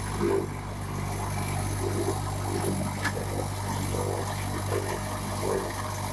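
Precast concrete wall panel extruder running as it moves along the casting bed, a steady low hum with a throb recurring roughly every second. The machine, in service for more than five years, is said to be still working perfectly.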